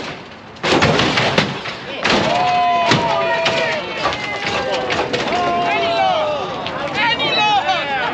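Lowrider hydraulics hopping a car: sharp bangs and slams as the car is thrown up and lands, about a second in and twice more over the next two seconds. Then a crowd shouting and whooping, growing louder near the end.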